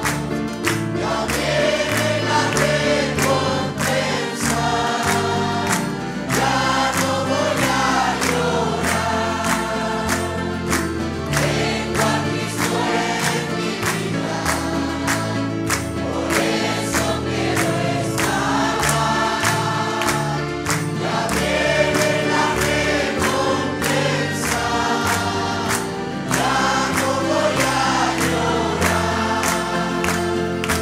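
Congregation singing a Spanish gospel hymn together, with instrumental accompaniment and a steady beat, and hands clapping along.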